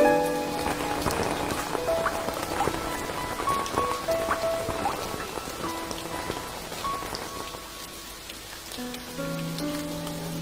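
Steady rain falling, a patter of drops, under a sparse instrumental passage: a few soft single notes in the middle, with fuller sustained chords at the start and coming back near the end.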